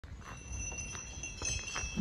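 Quiet high ringing of a chime, two steady tones held throughout, with a few soft ticks and a low rumble underneath.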